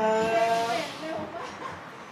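A man's voice finishing a Thai greeting, its last syllable 'khrap' drawn out on one steady pitch for under a second, followed by a quieter background.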